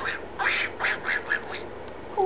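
A talking Donald Duck plush hand puppet plays Donald Duck's quacking laugh through its built-in speaker: a quick run of short, squawky syllables.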